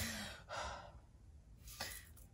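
A man's quiet, breathy sigh: a sharp exhale at the start and a second, longer breath out about half a second in, then a short breath near the end.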